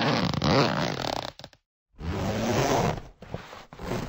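Zippers being pulled: one zip run that stops a little over a second in, a brief silence, then a second zip run followed by a few short, quick tugs near the end.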